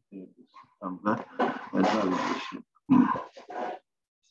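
A man's voice making drawn-out vocal sounds in several short bursts, not clear words.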